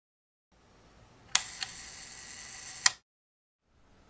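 A sharp click, then a steady hiss with a faint high whine, a smaller click, and a second sharp click about a second and a half after the first, after which the hiss cuts off suddenly.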